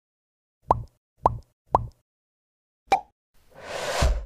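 Edited-in outro sound effects: three quick pops about half a second apart, each with a short rising pitch, then a fourth pop about a second later. A swelling whoosh builds near the end.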